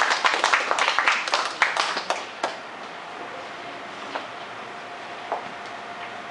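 A small group of people clapping, dying away about two and a half seconds in. After it a steady hum remains, with a couple of faint clicks.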